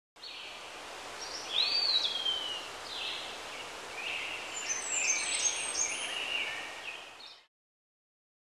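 Songbirds singing in short whistled phrases and chirps over a steady outdoor hiss, busiest in the middle seconds. The sound stops abruptly shortly before the end.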